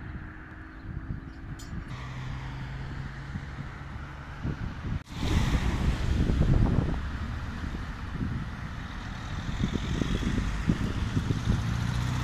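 Outdoor street ambience: wind buffeting the microphone over a low traffic rumble, with a steady engine hum for a few seconds. About five seconds in the sound cuts and the gusty wind rumble comes back louder.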